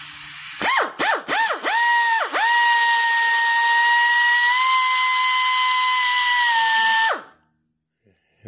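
Pneumatic die grinder with a carbide burr, used to relieve the oil hole of a VW crankshaft main bearing so it lines up with the case's oil galley. It is blipped about five times in quick succession, each a short whine that rises and falls, then held at full speed as one steady high whine with an air hiss for about four and a half seconds before it shuts off and winds down.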